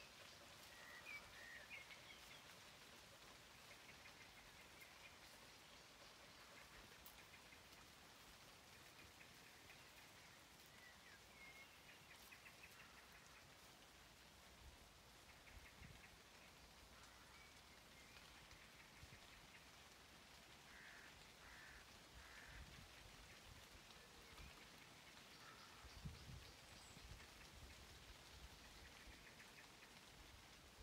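Faint, steady hiss of light rain, with a few faint bird chirps now and then and a soft low bump near the end.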